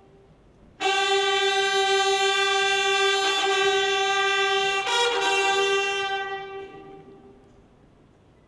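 Ceremonial brass fanfare: trumpets hold one long note from about a second in, a higher note briefly joins near five seconds, and the sound dies away after about six seconds.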